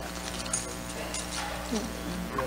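Faint, indistinct voices over a steady electrical hum, with a few soft clicks.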